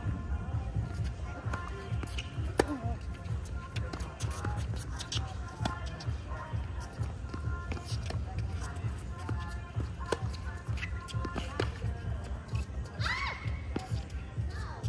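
Tennis balls struck by rackets and bouncing on a hard court during a rally: a string of sharp pops, the sharpest about two and a half seconds in, over a steady low rumble.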